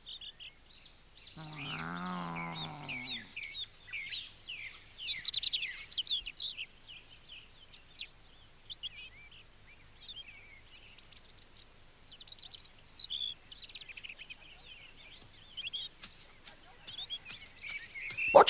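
Birds chirping in the forest background, with short high calls scattered throughout and busiest in the middle stretch. About one and a half seconds in comes a single low, voice-like sound that lasts under two seconds and sinks slightly in pitch.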